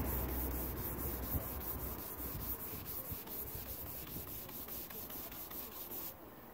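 Hand sanding with a sanding block on the primed alloy body panel of a Land Rover 109: even back-and-forth strokes, several a second. The panel is being blocked back through the blue guide coat to find the low spots.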